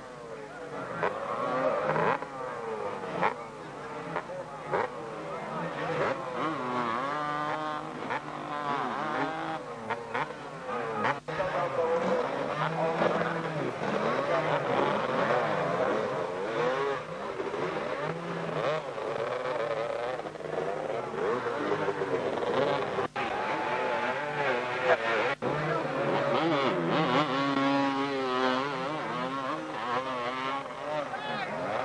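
Several 250cc two-stroke motocross bikes revving hard and unevenly, their pitch rising and falling again and again. The engines are working under heavy load on a slippery hill where the bikes are bogged in the mud.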